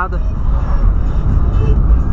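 Volkswagen Polo under way, heard from inside the cabin: a steady low engine and road rumble.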